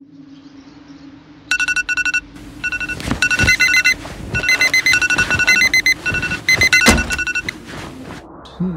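Phone alarm ringing, a quick repeating pattern of short high electronic beeps in groups, starting about one and a half seconds in, over a low steady tone, with a few thuds along the way.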